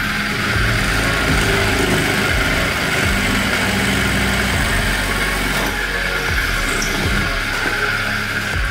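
A homemade brushless motor with a drill chuck running steadily and spinning a twist bit that bores into a wooden board, heard over background music.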